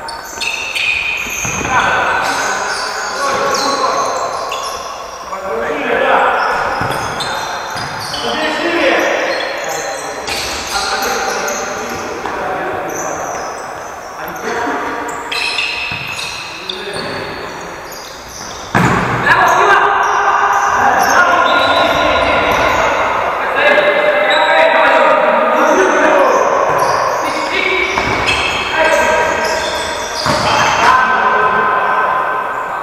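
Indoor football players shouting to each other, their voices echoing in a large sports hall, with the ball thudding off feet and the hard floor. The shouting gets louder about two-thirds of the way in.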